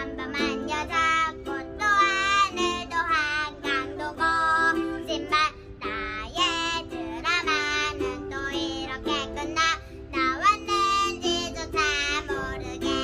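A young girl singing a Korean-language pop song to the accompaniment of two ukuleles.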